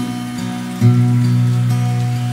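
Acoustic guitar playing the closing notes of a song, a new note struck about a second in and left ringing, over a steady hiss of rain.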